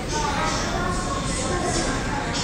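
Corded electric hair clipper buzzing as it cuts very short hair at the nape, each upward pass heard as a short hiss.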